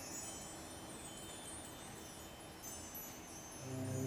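School band in a hushed passage of a symphony: faint high chime-like ringing hangs on, and near the end low sustained band chords come back in.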